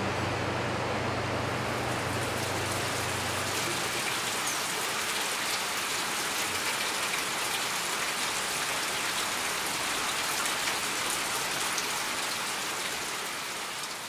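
Steady rain falling, an even hiss of many fine drops. A low steady hum sits under it for the first few seconds, then stops.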